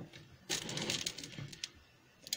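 Hand scooping dry dog kibble in a metal tin: small hard pellets rattling and clattering against each other and the tin for about a second, starting about half a second in.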